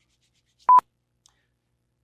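A single short electronic beep at a steady pitch of about 1 kHz, loud and lasting under a tenth of a second, about three-quarters of a second in.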